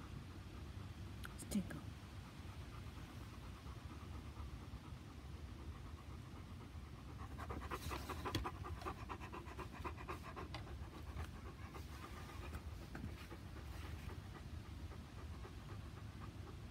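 Bernese mountain dog panting in quick, even breaths, plainest in the middle of the stretch and again more faintly later. A brief sharp sound comes about one and a half seconds in.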